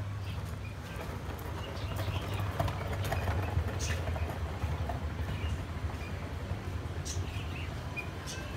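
Caged birds chirping in short, scattered calls over a steady low rumble.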